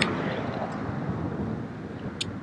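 Steady rush of wind on the microphone and road noise from riding a bicycle down a street.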